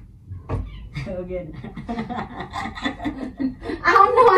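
People talking and chuckling, with one dull thump about half a second in.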